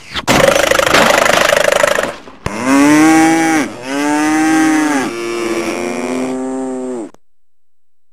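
A cow mooing. First comes a rough, noisy bellow lasting about two seconds. Then come three drawn-out moos, each dropping in pitch as it ends, which stop about a second before the end.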